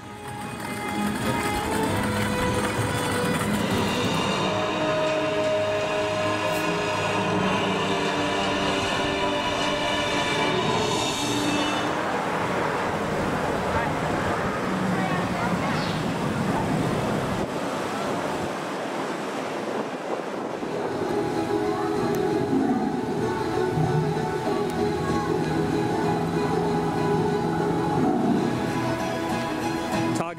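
Music with long held notes, going on throughout, with a stretch of noisy hiss in the middle.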